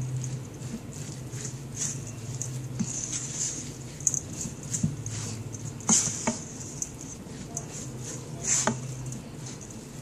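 Spatula stirring a wet, chunky salmon-burger mixture in a stainless steel bowl: continuous irregular scraping and mushy stirring sounds, with a few sharper knocks against the bowl around six and eight and a half seconds in.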